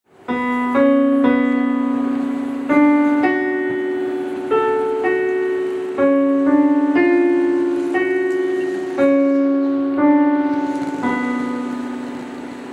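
Electric piano playing a slow line of sustained single notes in the middle register. A new note is struck about every second, and each one fades slowly.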